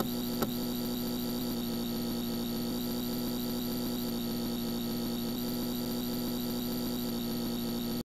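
A steady, unchanging hum of several fixed tones, with one short click about half a second in.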